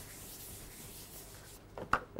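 Faint rubbing at a blackboard, a duster or chalk working the board, with a short sharp tap just before the end.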